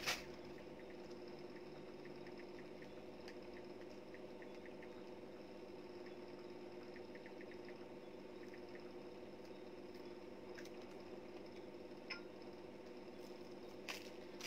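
Quiet room tone: a steady hum with a few faint scattered ticks and light knocks.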